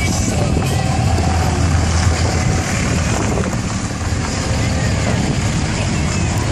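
Pickup truck engine running steadily at low speed as it tows a flatbed parade trailer past, a continuous low rumble, with voices in the background.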